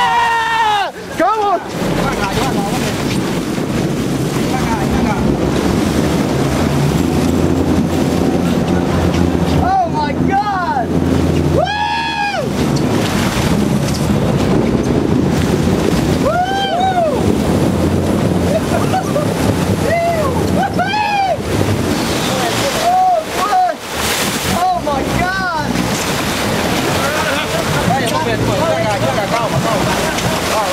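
A boat's engine running under wind on the microphone and water rushing along the hull, with excited shouts and whoops, long rising-and-falling calls, breaking in about eight times.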